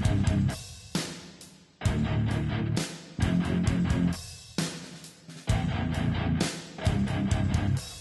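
Electric guitar playing chords in short phrases. Each chord is struck hard and left to ring and fade, with brief breaks between.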